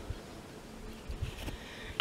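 Quiet background noise with a few faint low rumbles and no distinct event.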